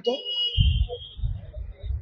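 A steady high-pitched electronic tone that fades out just before the end, over low rumbling noise.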